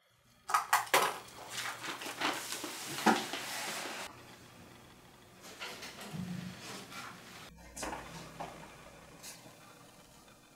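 Small hard objects clattering and clinking: a quick run of rattles in the first few seconds, then fainter scattered clinks.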